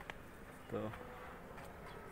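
Faint buzzing of a flying insect, heard as a thin steady hum over quiet outdoor background noise.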